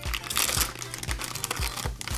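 Plastic blind-bag pouch crinkling and rustling in the hands as it is torn open, in a quick run of sharp crackles.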